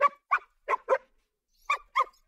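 A dog barking in short barks: four in quick succession in the first second, then two more near the end.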